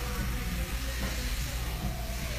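Faint background music over a steady low hum.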